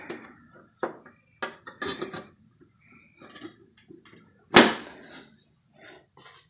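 Thin aluminium aircraft engine cowling panels being handled and set into place: a few separate knocks and light metallic clicks with faint scraping between, the loudest a sharp knock about four and a half seconds in.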